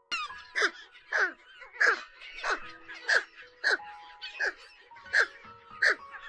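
Pelican calls: a string of about nine short, harsh calls, each falling quickly in pitch, repeating roughly every two-thirds of a second. Soft background music plays with steady notes underneath.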